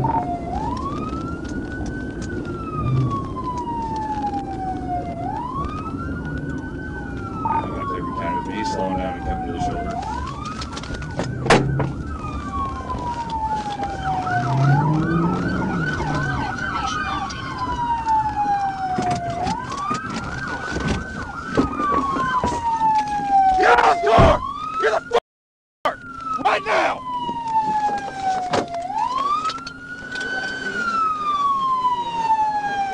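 Police siren on wail, rising and falling in slow sweeps about every four and a half seconds over steady engine and road noise. A faster yelp overlaps it for several seconds in the middle. The sound cuts out briefly for about half a second about 25 seconds in.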